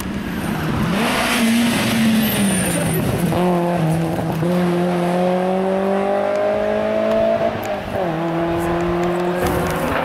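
BMW E30 rally car's engine under hard acceleration on gravel. The revs dip early, then climb steadily in one gear, drop sharply at an upshift near 8 seconds, and climb again.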